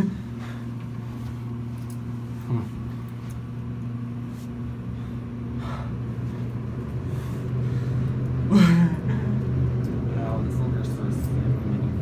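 Otis high-rise elevator car climbing: a steady low hum in the cab that grows louder about halfway through as the car picks up speed. A short laugh near the start and a brief voice about two-thirds of the way in.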